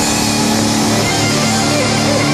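Live rock band playing loudly: electric guitars holding sustained chords over bass and drums.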